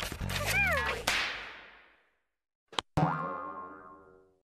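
Cartoon sound effect: a springy boing-like burst whose pitch rises and falls, fading out within about two seconds. After a short silence, a sharp click and a ringing musical chord that dies away.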